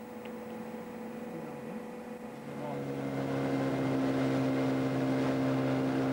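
Small boat's outboard motor running at a steady pitch, growing louder from about two seconds in.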